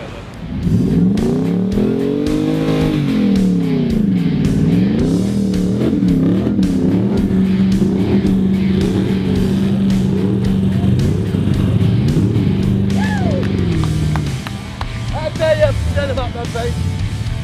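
A 4WD's engine revving hard up and down again and again, then held at high revs for several seconds, as it tows a heavy off-road caravan through soft sand. It is working to keep moving in the sand. The engine eases off near the end.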